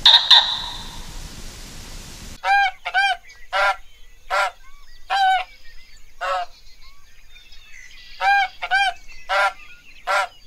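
A brief, loud, high-pitched sound right at the start. Then domestic white geese honk repeatedly: about nine short calls, spaced irregularly, with a pause of a couple of seconds midway.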